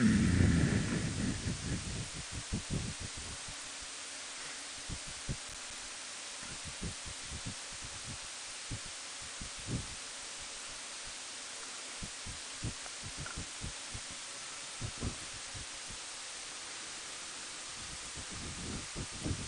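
Riding noise on a motorcycle-mounted microphone: a steady hiss of wind, with irregular low thumps, packed closely in the first two seconds and scattered after.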